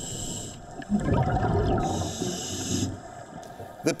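Underwater sound of scuba divers breathing through their regulators: a hissing breath at the start and another about two seconds in, with a rumble of bubbling exhaust in between.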